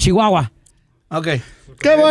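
A man's voice rapidly repeating "no", a short pause, then a man starting to sing a cappella with held notes near the end.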